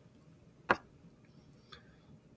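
A single sharp click as small block magnets snap together into a stack of four, followed about a second later by a faint tap as the stack is set down on the desk against a wooden ruler.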